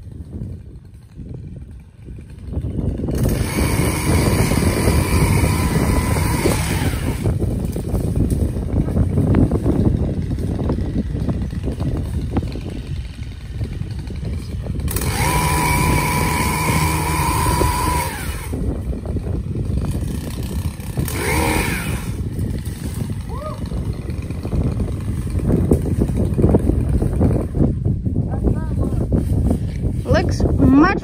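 Powered pole saw cutting overhead tree branches, running in bursts. A high motor whine stands out about three seconds in and again about fifteen seconds in, with a shorter burst a few seconds later.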